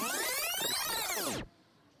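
Edited-in transition sound effect: a loud swoosh whose pitch sweeps up and then back down, lasting about a second and a half and stopping abruptly.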